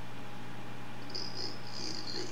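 A pause in the talk with only a steady low hum. About halfway through a faint high-pitched trill comes in and keeps going.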